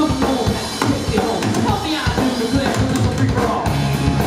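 Live rock band playing: electric guitars over a drum kit, with guitar notes bending up and down in pitch.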